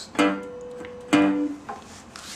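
Resonator guitar in open G tuning: two single notes plucked on the treble strings about a second apart, each ringing on, the second the louder.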